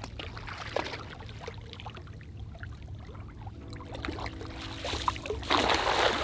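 Small splashes of wading in shallow lake water, then about five and a half seconds in a thrown cast net lands on the water with a brief spreading splash, the loudest sound here.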